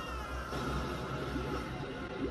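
Cartoon soundtrack: a character's high, wailing cry of "Mama!" trails off in the first half second, over quiet background music.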